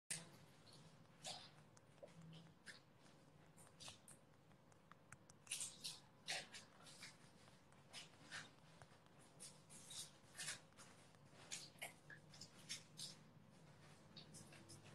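Near silence broken by faint, irregular sharp clicks and ticks, a few each second.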